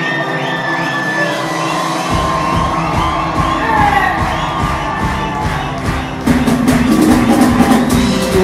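Live band music on stage with a crowd cheering and whooping. A bass-and-drum beat comes in about two seconds in, and the music gets louder about six seconds in.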